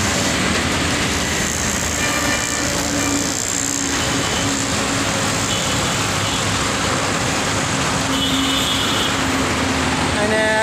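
Steady traffic noise with a low hum under it.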